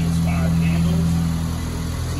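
Ford Ranger's 2.3-litre EcoBoost four-cylinder idling with a steady, even low hum.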